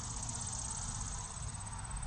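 Insects in the summer grass trilling steadily: a high, even, rapidly pulsing trill, with a low rumble underneath.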